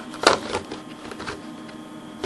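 A clear plastic container being handled by hand: one sharp plastic click about a quarter of a second in, then a few faint ticks and scrapes.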